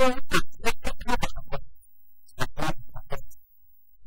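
A man speaking into a lapel microphone, in two stretches with a short pause between.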